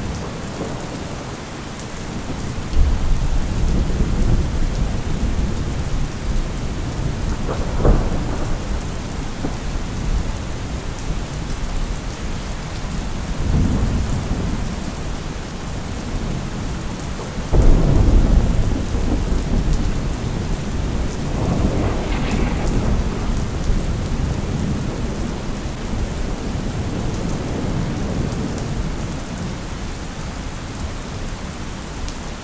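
Steady rain with thunder rolling several times. One peal is short and sharp. The loudest breaks suddenly a little past halfway and rumbles on for a couple of seconds.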